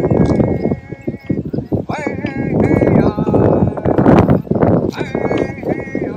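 Native American ceremonial singing: voices holding long, level notes, breaking off and starting again, with an uneven knocking beat underneath.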